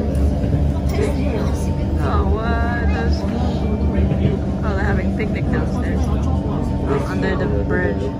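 Metro train running on an elevated track, heard from inside the carriage: a steady low rumble with a constant motor hum.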